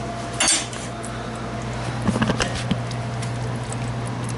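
Sharp metallic clink of a 1998 Honda Prelude's radiator cap coming off the filler neck about half a second in, then a few lighter clicks and knocks, over a steady low hum.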